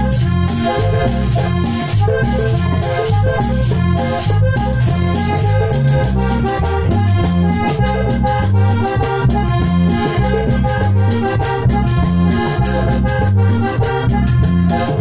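Instrumental cumbia: a Hohner Corona III button accordion carries the melody, while a metal scraper keeps up a fast, steady rhythm over a strong bass line.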